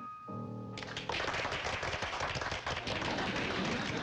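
The song's accompaniment ends on a held chord, and about a second in a small group breaks into steady applause.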